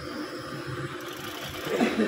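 Machinery running steadily, an engine-like hum, with a short louder sound near the end.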